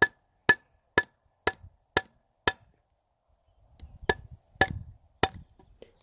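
A plastic sap spile being knocked into a drilled taphole in a tree trunk with a hand-held rod: sharp taps about two a second, six in a row, then after a pause three more. It is being driven in for a snug fit.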